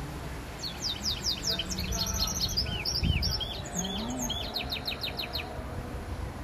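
Brimstone mule, a canary hybrid, singing one phrase of about five seconds: a run of quick high descending notes, then a series of arched notes, ending in a fast trill.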